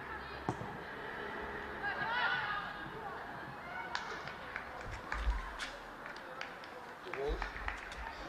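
Pitch-side sound of a women's football match: a sharp ball kick about half a second in, players shouting to each other around two seconds in, then a run of sharp knocks and clicks in the second half with brief low rumbles.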